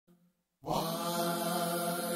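Layered a cappella voices, all sung by one singer, come in about half a second in on a steady, held, wordless chord, with no instruments.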